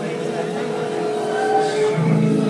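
A sustained chord of several steady tones from the act's backing track, played over the venue's speakers.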